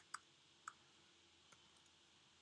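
A few isolated computer keyboard keystrokes, about four faint clicks, the first two close together and loudest, the rest spaced out, over near-silent room tone.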